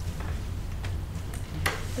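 Steady low hum of room and sound-system noise, with one sharp click near the end.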